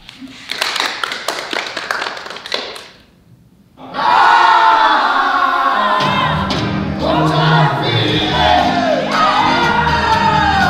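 A quick run of sharp percussive hits, a short pause, then a group of voices singing loudly together in sliding, wailing pitches over a low accompaniment.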